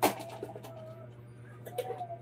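A sharp knock at the very start, then a faint wavering pitched call, twice, over a steady low hum.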